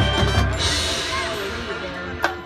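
Marching band playing, with heavy low drum hits at the start, then a bright crash about half a second in that rings and fades under sustained band chords.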